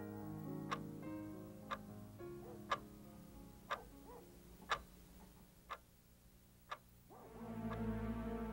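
Analog alarm clock ticking steadily, about once a second, over quiet background music that swells again near the end.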